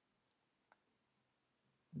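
Near silence with two faint computer mouse clicks, less than half a second apart.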